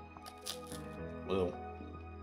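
A crisp wafer cone crunching as it is bitten and chewed, with two sharp crackles about half a second in, over quiet background music.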